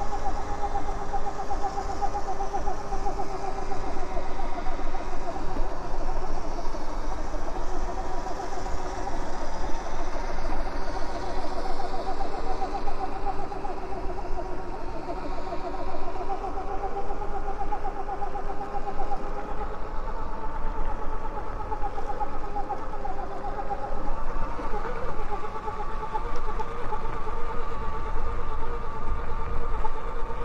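Electric bike motor whining steadily while riding, a two-tone whine that wavers slightly with speed, over a low rumble of wind and tyres on dirt.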